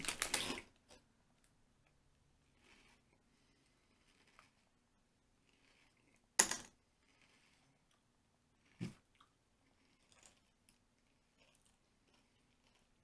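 Two people biting into crisp potato chips together right at the start, then chewing quietly with a few faint crunches. One loud, short noise about six seconds in, and a smaller one a little before nine seconds.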